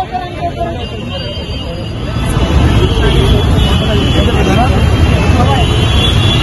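Roadside traffic noise: the low rumble of passing vehicles, including buses, grows louder a couple of seconds in, under the chatter of a crowd.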